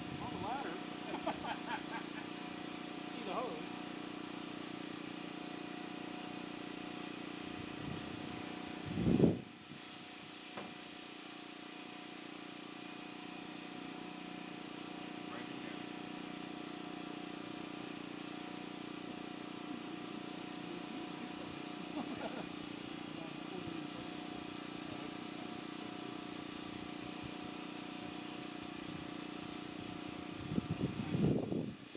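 A steady mechanical hum with several even pitch lines, with faint voices now and then, and one loud low thump about nine seconds in.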